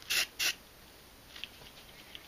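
Rusk texture dry finish aerosol spray can hissing in two short sprays within the first half second, followed by quiet.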